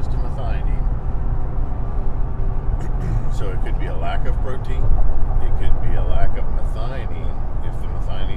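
A man talking, with a steady low rumble underneath, a little louder for a couple of seconds past the middle.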